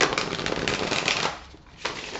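A deck of tarot cards being riffle-shuffled: a fast run of flicking card edges for about a second and a half, then a single sharp snap near the end as the deck is bridged back together.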